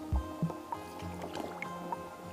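Instrumental background music with sustained notes that change every fraction of a second and a low thump just after the start.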